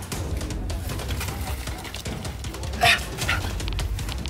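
Background action music with a steady low pulse. About three seconds in, a short, loud call-like sound cuts in, followed by a weaker one just after.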